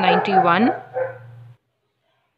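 A woman's voice speaking, trailing off within the first second and a half, then silence.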